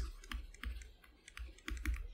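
Quiet, irregular clicks and taps from a computer input device while a word is handwritten on screen in a drawing program.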